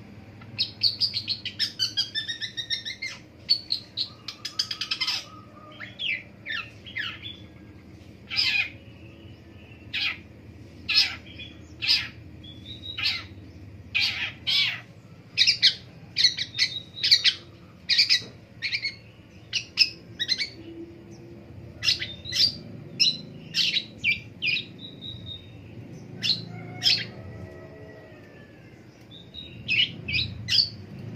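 Long-tailed shrike singing: a rapid chattering run of notes in the first few seconds, then a long series of short, sharp, high notes, often in quick pairs or clusters, with a lull near the end.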